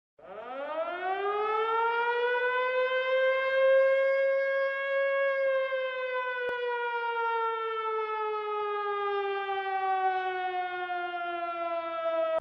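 An air-raid siren winding up over about four seconds to a steady wail, then slowly winding down in pitch.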